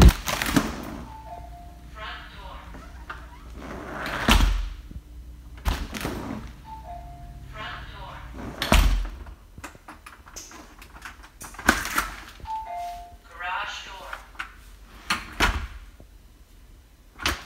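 A door fitted with a wireless contact sensor is opened and shut several times, each close a sharp thud. The security panel answers three times with a short two-note chime followed by a brief voice announcement, signalling that the door sensor has tripped.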